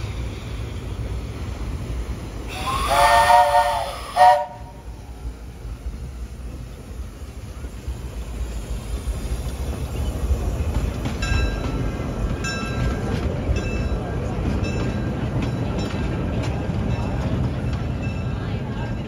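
Steam whistle of 1907 Baldwin narrow-gauge locomotive #3: one blast of about a second and a half with a rush of steam, then a short toot, over the low rumble of the moving train. From about the middle on, faint metallic ringing strokes repeat about twice a second.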